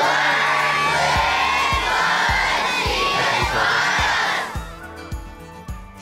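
A large crowd of children shouting and cheering together, loud and sustained, breaking off about four and a half seconds in. Background music with a steady beat runs underneath and carries on after the shouting stops.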